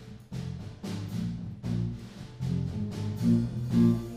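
Live band starting a song: a steady drum beat over bass notes and electric guitar.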